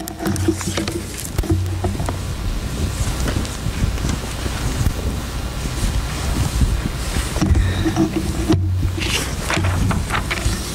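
Low rumbling and rustling on the pulpit microphone, with scattered knocks, as one man steps away from the pulpit and another steps up and opens a Bible.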